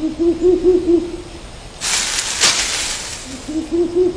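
Owl hooting in a quick run of short, low notes, about five a second, then again near the end. A short burst of hissing noise comes between the two runs, about two seconds in.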